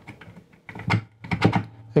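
A quick run of light clicks and knocks from a magnifying lamp's jointed arm and mounting post being handled: a knob is loosened and the post is slid into its round base. The knocks bunch together about a second in.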